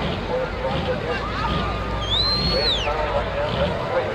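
A light pro stock John Deere pulling tractor's diesel engine idling low at the starting line under crowd chatter. About two seconds in, a high whistle rises, holds for a moment, then falls away.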